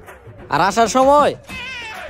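A cat-like meowing call, drawn out and falling in pitch at its end, followed by a fainter wavering tone, over background music.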